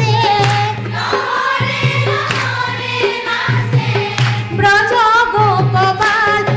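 A group of women singing a Holi song together in chorus, with hand clapping keeping the beat.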